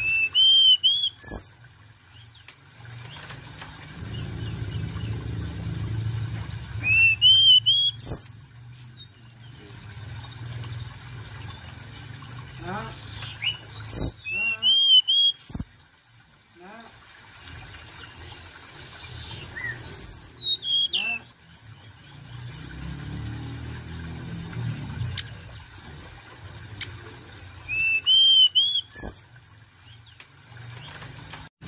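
Hill blue flycatcher (tledekan gunung) singing: short bright phrases, each a quick run of rising whistled notes followed by high sharp notes, repeated about every six to seven seconds. A low rumble lies beneath at times.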